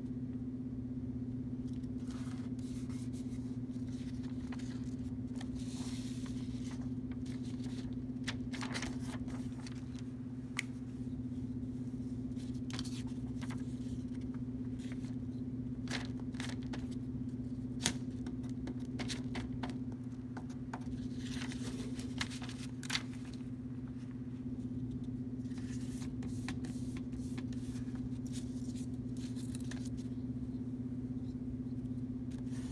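Construction-paper cutouts being handled and pressed down by hand as they are glued on: scattered soft rustles and rubs with a few sharp little clicks, over a steady low hum.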